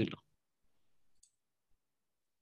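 A single faint computer mouse click about a second in, in an otherwise near-silent pause.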